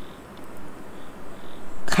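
A pause in a woman's talking: faint, steady room hiss, with her speech starting again at the very end.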